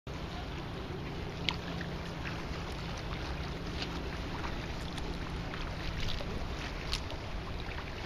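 Wind rumbling on the microphone over choppy water lapping at a kayak's hull, with a few small sharp splashes and a low steady hum that fades after about five seconds.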